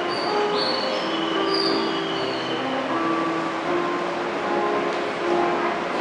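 Recorded train sound effect: a steady rumble with several short, high-pitched wheel squeals in the first two seconds.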